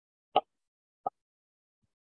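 Two short knocks: a sharp one near the start, then a fainter one less than a second later.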